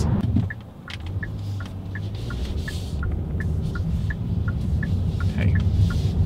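Inside the cabin of a 2021 Hyundai Sonata on the move: its 1.6-litre turbocharged four-cylinder and the road give a steady low rumble, with an even light ticking, about two to three ticks a second, from about a second in.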